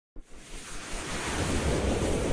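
Rushing whoosh sound effect of a logo intro: a wash of noise that starts abruptly just after the beginning and swells steadily louder.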